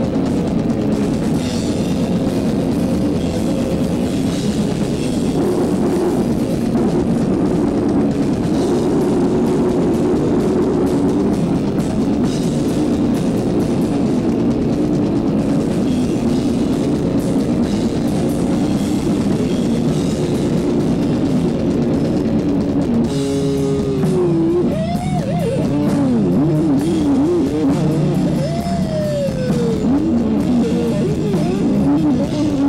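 Death/doom metal band playing live and loud: heavily distorted guitar and bass riffing over a drum kit. Near the end a wavering, bending pitched line rises and falls over the riff.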